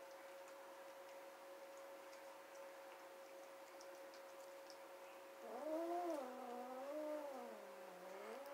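Domestic cat yowling: one long, wavering call starting about five and a half seconds in, over a faint steady hum. It is a cat's complaint at another cat near its food.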